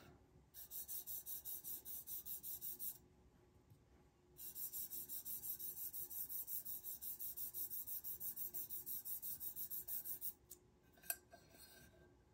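Fingertip rubbing dry mica powder back and forth onto a matte black tumbler: faint quick strokes, about four a second, in two bouts with a pause about three seconds in.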